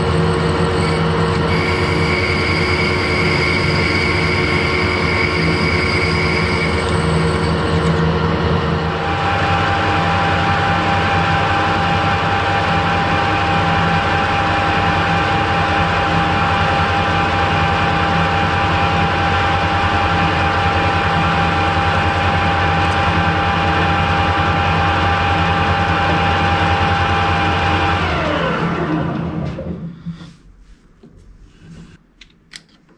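Metal lathe running with its chuck spinning: a steady mechanical hum with a whine, whose tones shift about nine seconds in. Near the end the lathe is switched off and spins down, the whine falling in pitch as the chuck slows to a stop.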